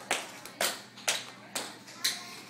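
Heeled shoes clicking on a hard floor in steady steps, about two a second.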